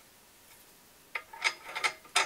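Small metal rifle parts being handled: a sharp click just over a second in, then a few fainter clicks and rustles as the crush washer and flash hider are picked up.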